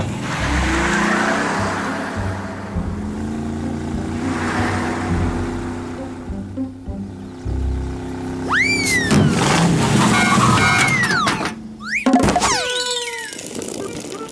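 Animated delivery truck's engine running as it pulls away and drives down the street, under background music. Later there are quick whistle-like cartoon sound effects that swoop up and down in pitch, twice.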